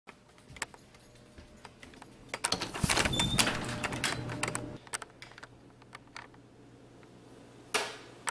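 Light clicks and knocks from a handheld camera being carried through a doorway, with a door handled along the way. They are busiest from about two and a half to five seconds in, where a brief faint squeak is heard.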